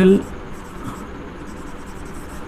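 Marker writing on a whiteboard: a string of short, faint, high scratchy strokes as a word is written.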